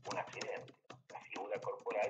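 Speech only: a man talking with a low-pitched voice.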